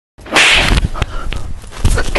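A sudden loud swish about half a second in, followed by a couple of light knocks and a soft thump near the end.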